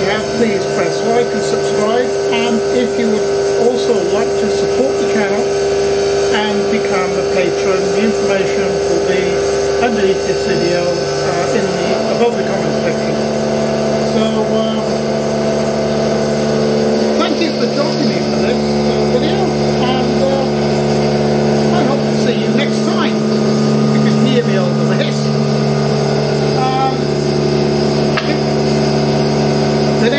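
A man talking over a steady hum that shifts in pitch a few times.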